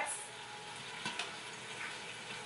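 Faint, steady kitchen hiss of cooking and washing-up noise, with a light knock about a second in.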